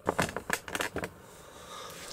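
A quick run of small plastic clicks and taps in the first second from hard plastic action figures being handled, then it goes quiet.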